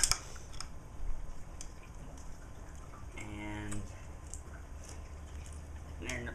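Scattered light metallic clicks and taps from a screwdriver and the parts of a 1928 Maytag 92 engine being handled while its gear cover is screwed down, the sharpest cluster just at the start. About three seconds in, a person hums briefly.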